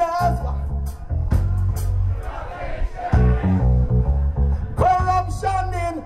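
Live reggae band playing, led by a heavy bass line under drums and guitar. A male voice sings a held line near the end.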